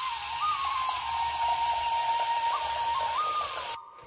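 Kitchen tap running, water pouring into a plastic bowl in a steel sink, shut off suddenly near the end. Background flute music plays throughout.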